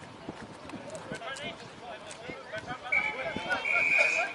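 Referee's whistle blown twice, a short blast about three seconds in and a longer one near the end, signalling a penalty, over faint voices of players on the field.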